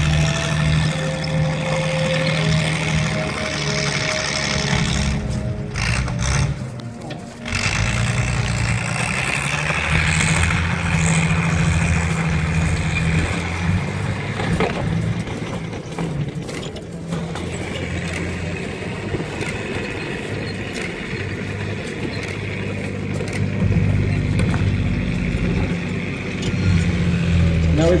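Panther tank's V12 petrol engine running as the tank drives, a steady low engine note heard through a mobile phone's microphone. The sound dips and drops out briefly about seven seconds in.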